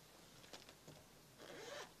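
Near silence: courtroom room tone, with a few faint clicks and a brief soft rustle about one and a half seconds in.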